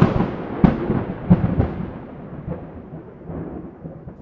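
Thunderclap sound effect: a sudden sharp crack, a few more cracks in the next second and a half, then a rolling rumble that slowly fades.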